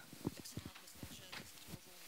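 Faint, irregular soft knocks and thumps, about eight in two seconds.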